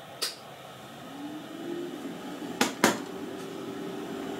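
A 3D printer being power-cycled at its switch: a click, then a faint fan hum rising in pitch as it spins up and holding steady. Two sharp clicks follow near three seconds in.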